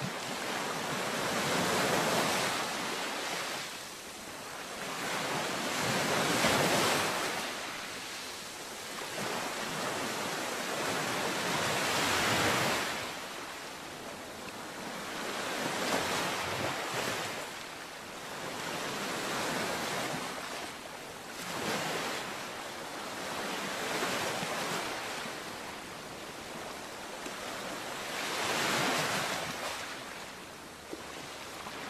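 Ocean surf: waves washing in and drawing back in swells about every four to six seconds.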